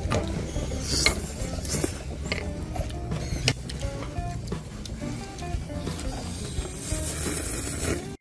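Noodles being slurped from chopsticks in several quick, rattling sucks, over quiet background music.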